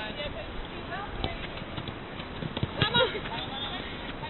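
Five-a-side football in play: several sharp knocks of the ball being kicked, with players' voices calling out over the pitch noise, loudest about three seconds in.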